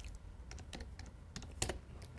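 Faint, irregular clicks of a computer keyboard being tapped, a few scattered keystrokes with a slightly louder cluster near the end.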